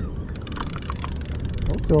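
Conventional fishing reel ratcheting: a fast, even run of clicks starting about half a second in and lasting into the end, over a steady low rumble.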